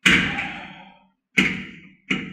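Two loud impacts, one at the start and one about a second and a half later, each dying away over about half a second in the echo of a small tiled shower stall.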